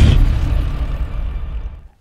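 The closing hit of an electronic logo-intro sting, its rumbling, reverberant tail fading away over about two seconds.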